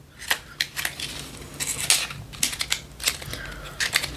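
Packaging of a lip pencil two-pack being handled and opened by hand: a run of irregular crackles and clicks.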